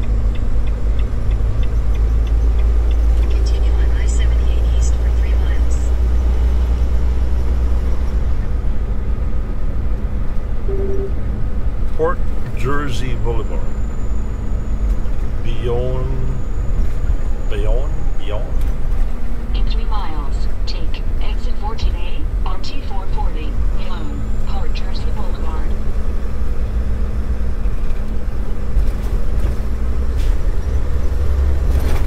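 Volvo VNL860 semi truck cruising at highway speed, heard from the cab: a steady low engine and road drone with a constant hum.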